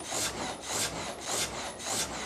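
The vertical frame saw of an 1896 water-powered sawmill cutting through a log: a rhythmic rasp of the blade through the wood, about two strokes a second.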